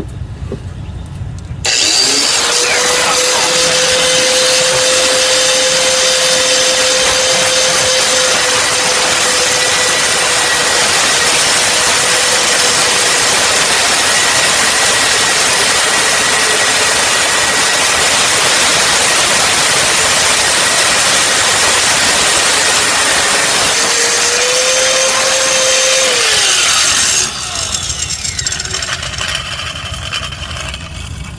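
Angle grinder starting up about two seconds in and cutting through a seized inner tie rod jam nut for about 25 seconds with a steady whine. It speeds up briefly near the end, then is switched off and winds down.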